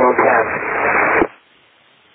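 Air traffic controller's voice over a narrow-band aviation radio, ending about a second in, followed by under a second of faint radio hiss between transmissions.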